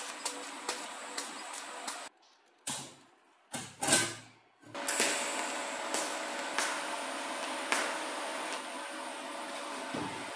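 TIG welding arc on sheet steel: a steady hiss with regular ticks, two or three a second, for about two seconds. After a break of a couple of seconds with a few short noises, the loudest near four seconds in, the arc hiss resumes steadily with a faint hum and an occasional tick.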